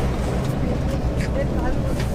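A steady low engine drone, with faint voices over it.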